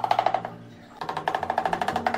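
Rapid rattling taps, about fourteen a second, from a handheld tool on a ceramic wall tile being bedded into its adhesive, with a ringing tone from the tile. There is a short burst at the start and a longer one from about halfway.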